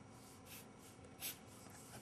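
Faint scratching of a felt-tip pen tip on paper as it draws a few short straight construction lines, with one slightly louder stroke a little past the middle.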